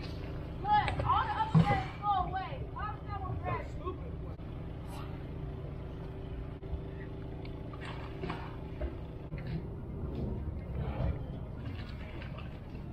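Children squealing and calling out excitedly in a cluster of high, rising-and-falling cries during the first few seconds. A steady low machine hum runs underneath and stops about three-quarters of the way through.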